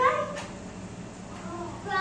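Cat mewing: a high call at the start and another shortly before the end.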